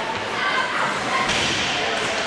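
Ice hockey game heard from the stands: spectators' voices over the noise of play on the ice, with a thud from the play about midway.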